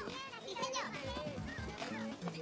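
A crowd of overlapping voices chattering, with music underneath.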